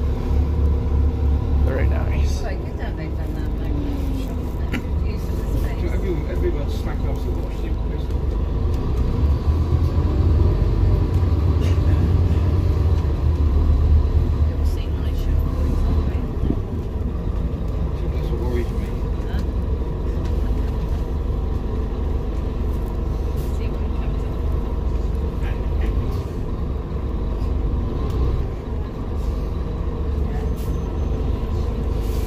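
Scania Enviro400 double-decker bus's diesel engine heard from inside the passenger saloon, pulling away and running under load with a deep steady rumble. The pitch rises in the first few seconds, and the rumble swells from about ten to fifteen seconds in, with light rattles and clicks from the bus body.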